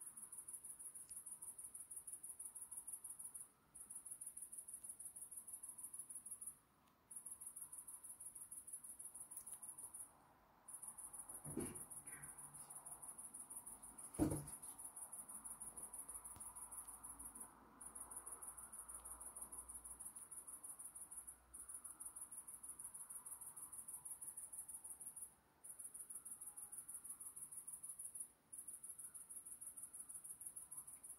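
Faint, high-pitched trilling of crickets, running in long stretches with short breaks every few seconds. Two soft knocks sound near the middle, the second one louder.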